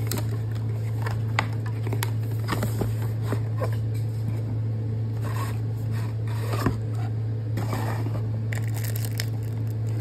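Plastic shrink wrap on a cardboard trading-card box crinkling and tearing, and the box's cardboard lid scraping as it is worked open, with scattered sharp clicks. A steady low hum runs underneath.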